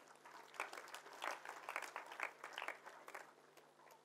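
Faint, scattered hand clapping from an audience, irregular claps several times a second that die away near the end.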